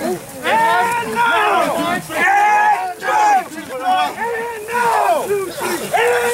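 Rugby players shouting and grunting with effort as they push in a maul, several voices in short, overlapping shouts one after another.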